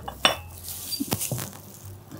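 A few light clinks of a white porcelain teacup and saucer being handled and set down: one about a quarter of a second in, then a quick cluster a second later.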